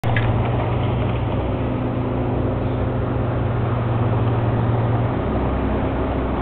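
Heavy machinery running with a steady low mechanical hum; about five seconds in, the hum drops to a lower pitch.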